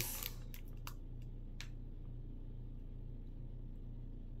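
A few faint crinkles and ticks of a plastic candy packet being handled in the fingers, the clearest about a second and a half in, over a steady low hum.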